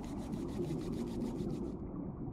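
Hands rubbing quickly back and forth against each other, a steady soft rushing sound as the palms are warmed.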